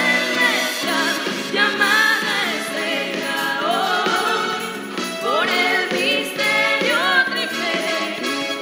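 Christian choral music: a group of voices singing a hymn over sustained accompaniment.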